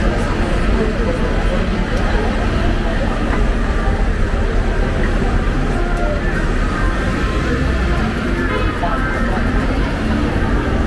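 Busy city street traffic: vehicle engines running with a steady low rumble, including a refuse lorry and double-decker buses, with passers-by talking.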